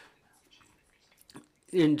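A pause in a woman's speech with a few faint mouth clicks, then she starts speaking again near the end.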